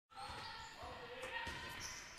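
Basketball dribbled on a hardwood court, quietly, with a couple of bounces about a second and a half in, and faint short high squeaks.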